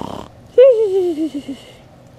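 A person voicing cartoon snoring: a short, rough snorting inhale, then a high, wavering exhale that slides down in pitch for about a second.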